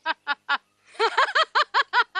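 A person laughing in a fast run of high-pitched 'ha-ha' syllables. The laugh trails off about half a second in and starts again about a second in.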